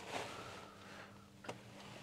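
Quiet handling sounds: a faint rustle of paper towel and one light click about one and a half seconds in, over a low steady hum.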